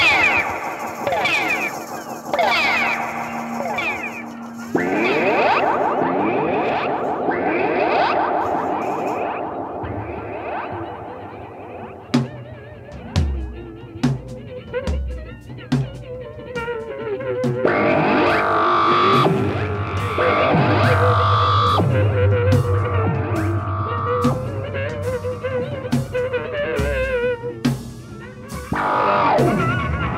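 Instrumental psychedelic rock: electric guitar heavily processed through effects, its pitch sliding up and down. About twelve seconds in, sharp percussive hits join, and a low bass line comes in a few seconds later.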